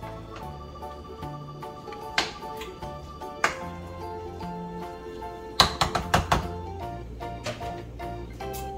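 Metal kitchen tongs clacking and tapping against a cooking pot while spaghetti is tossed in sauce: a single tap about two seconds in, another a little later, and a quick run of clacks around six seconds in, the loudest part. Background music with a steady bass line plays throughout.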